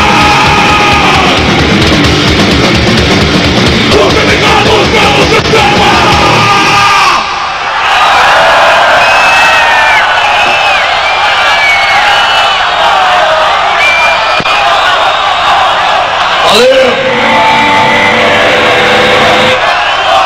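Live heavy metal band playing a fast punk song with pounding drums and distorted guitar, which stops suddenly about seven seconds in. Then a huge crowd cheers and yells, and a man shouts "Valeu!" near the end.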